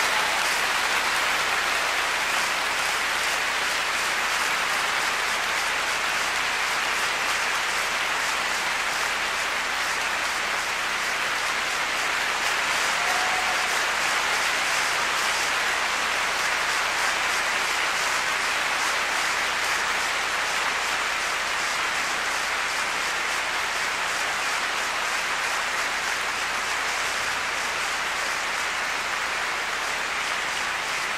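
A large concert-hall audience applauding, a dense, steady clapping that holds at an even level throughout.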